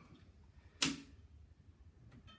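A single sharp click a little under a second in, against faint room tone.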